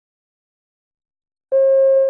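Silence, then a single steady electronic beep that starts suddenly about one and a half seconds in, marking the end of the recorded listening passage.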